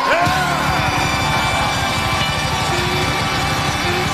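Electric blues band music: a note slides down in pitch at the start, then the band holds sustained tones over a steady beat.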